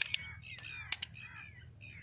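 Birds calling over and over with short falling calls, and a few sharp metallic clicks, two near the start and two about a second in, as cartridges are handled and pressed into a magazine.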